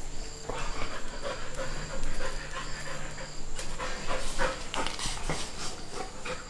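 Golden retriever puppy panting in quick, rhythmic breaths, about two a second.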